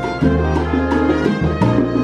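Live salsa band playing, with congas and timbales keeping a steady rhythm over sustained low bass notes.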